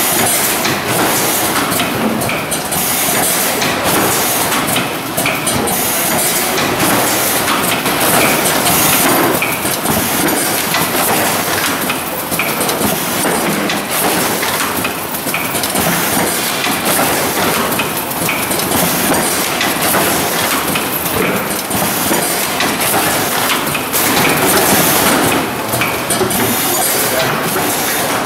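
Hamrick Model 300D case packer running: a steady mechanical clatter with short hissing bursts every second or two as the pneumatic packing heads cycle, loading product into cardboard cases.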